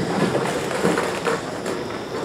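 A group of people sitting back down on chairs after standing to applaud: a few scattered, fading claps among the shuffle and clatter of chairs and gowns.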